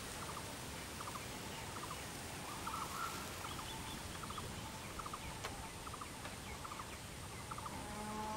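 Outdoor country ambience: a bird calling over and over in short clusters of quick notes, about once a second, over a steady background hiss with a faint, thin, high-pitched whine.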